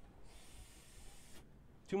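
A vaper's breath: a faint airy hiss about a second long that stops abruptly.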